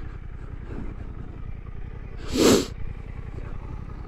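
Suzuki GSX-8S's 776 cc parallel-twin engine idling steadily, with a short, loud rushing burst of noise about two and a half seconds in.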